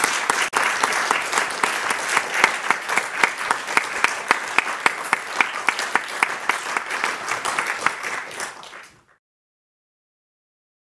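Audience applauding a lecturer: a dense round of clapping that thins out late on and cuts off suddenly about nine seconds in.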